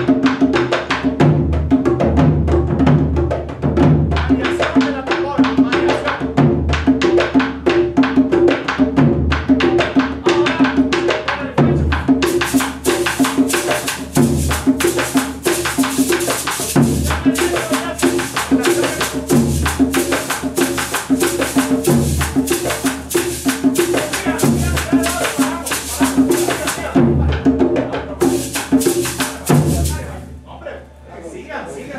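Traditional Colombian cumbia drum ensemble playing a steady, repeating rhythm on its drums. A shaker joins about twelve seconds in, drops out briefly near the end, then comes back.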